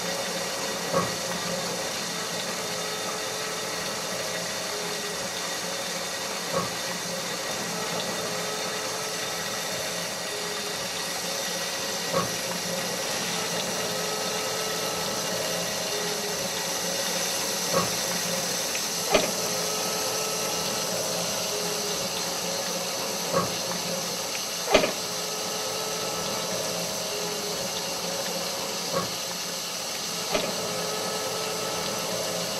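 A steady machine-like hum and hiss with a few held tones, broken by sharp clicks about every five and a half seconds, two of them closely doubled.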